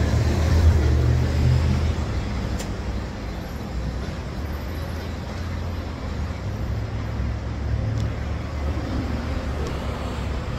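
City street traffic noise: a low rumble of passing motor vehicles, loudest in the first two seconds and swelling again about two-thirds of the way through, over a steady haze of street noise.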